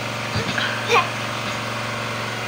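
A small motor hums steadily. A short voice sound comes about a second in.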